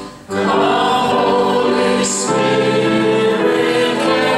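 Church congregation singing a hymn together, with a short break between lines just after the start before the singing picks up again.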